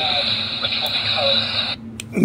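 Small pocket AM radio speaker playing a weakly received medium-wave station: faint talk buried in steady static hiss. It cuts off abruptly near the end as the radio is switched off.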